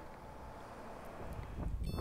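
Faint roadside ambience of distant traffic and wind, slowly growing. Near the end comes a short, high electronic beep in two quick pulses.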